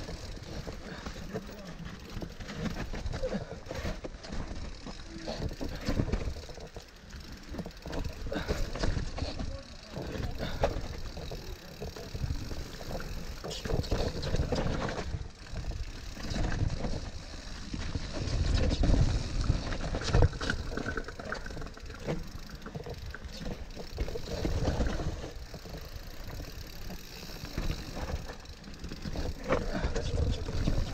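Mountain bike riding down a dry, leaf-covered dirt trail: tyres rolling and crunching over leaves and dirt, with the frame and drivetrain rattling over bumps in irregular surges.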